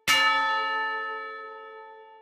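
Closing note of a logo jingle: one bell-like chime struck once, ringing with several overtones and fading away over about two seconds.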